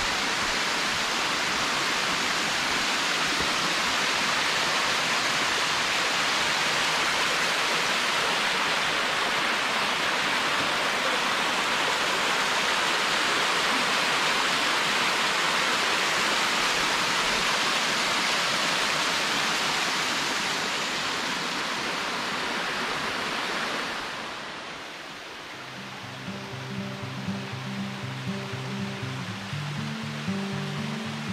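Small waterfall cascading down a rock face into a shallow pool, a steady rush of splashing water. It fades about 24 seconds in, and background music with a steady beat comes in near the end.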